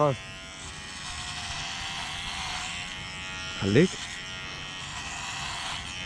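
Cordless electric hair clipper buzzing steadily as it shaves long hair down close to the scalp, its pitch dipping briefly about halfway through.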